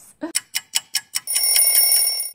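Alarm clock sound effect: a quick run of about ten ticks a second, then a loud ring that starts just past halfway through.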